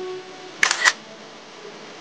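Camera shutter sound: two sharp clicks about a quarter second apart, a little over half a second in.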